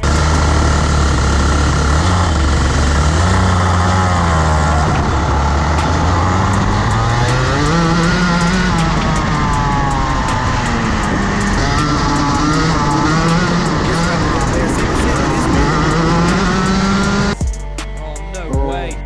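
Rotax Max 125cc two-stroke kart engine at racing speed, heard from onboard with other karts running close by. The pitch climbs as the kart accelerates, drops off for the corners and climbs again, several times over.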